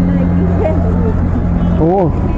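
A motor running steadily with an even low hum, over brief speech.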